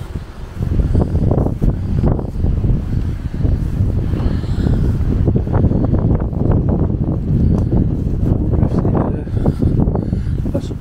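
Wind buffeting the camera's microphone: a loud, uneven rumble that rises and falls in gusts, with rustling footsteps through long grass and loose stone.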